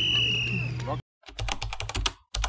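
A whistle blast of about a second, a steady high tone that sags slightly in pitch, the referee's whistle over field noise, cut off abruptly. Then comes a keyboard-typing sound effect, a fast run of clicks with a short break, as on-screen text is typed out.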